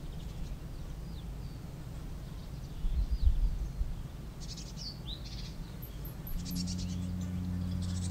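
Small birds chirping and trilling in woodland over a low rumble. There is a brief low thud about three seconds in, and a steady low hum comes in about two-thirds of the way through.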